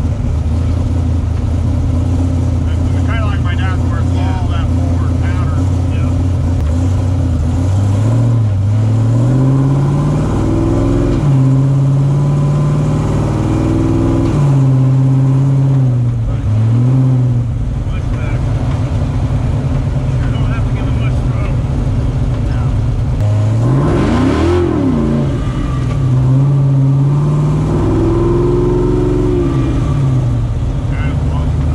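Supercharged 427ci LS V8 with a 4.5L Whipple blower, heard from inside the car's cabin. It runs at a steady, low note for several seconds, then accelerates hard several times, its pitch climbing and dropping with each pull and shift.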